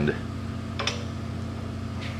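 A steady low hum from shop machinery or a motor, with one short light click a little under a second in.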